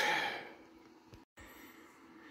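A man's breathy exhale, like a sigh, fading out over about half a second. Then faint room noise, broken by a brief dropout of sound about a second in.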